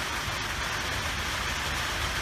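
Steady rain on a roof: an even hiss with a low rumble underneath.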